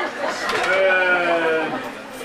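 A person's voice holding one long drawn-out note that slides slowly down in pitch for about a second.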